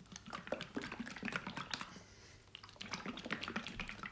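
A plastic jar of mineral paint shaken hard by hand, the paint knocking and sloshing inside in quick strokes. The shaking comes in two bouts with a short break about two seconds in.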